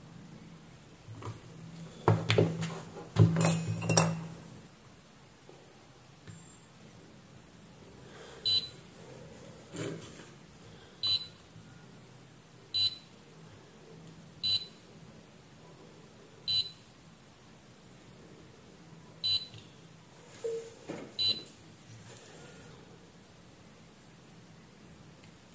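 A few loud knocks and clatter about two to four seconds in. After that comes a series of about eight short, high-pitched electronic beeps, spaced about one and a half to two seconds apart, from a beeper on the electronics repair bench.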